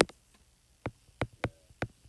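A stylus tapping on a tablet screen while numbers are handwritten: about four short, sharp clicks in the second half, over quiet room tone.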